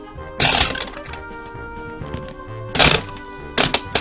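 Plastic turning knob of a toy candy-dispenser machine being cranked, making loud clattering, clicking bursts three times, over steady background music.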